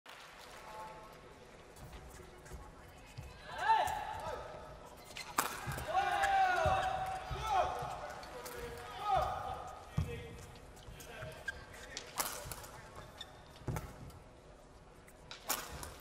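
Badminton rally in a hall: sharp racket strikes on the shuttlecock every few seconds, with shoes squeaking on the court mat in short rising-and-falling squeals.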